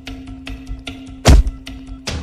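Dramatic film score of regular percussive hits over a held low note, with one loud, deep thud about a second and a half in: a hit effect for a blow in a fight.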